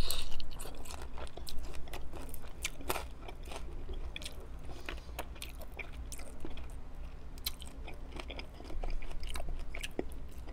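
Close-miked biting and chewing of a crispy lemon pepper chicken wing dipped in ranch: a loud bite at the start, then chewing with irregular crunchy crackles.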